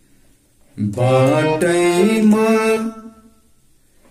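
Harmonium playing a short melodic phrase of several held notes, stepping from one to the next, with a voice singing along. It starts about a second in and fades out before the end.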